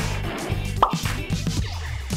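Upbeat background music with a steady beat, and a quick rising cartoon 'bloop' sound effect a little under a second in.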